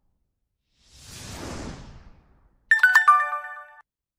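Sound effects of an animated like-and-subscribe graphic: a whoosh that swells and fades, then a quick bright chime of several ringing notes with clicks, which stops short before the end.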